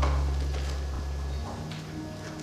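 A low, sustained musical note, likely an accompanying instrument, fading away over about a second and a half, with a few faint knocks.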